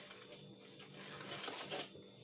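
Faint rustling and crinkling of a panty-liner pack's plastic wrapper and paper-wrapped liner being handled, a little louder in the second half.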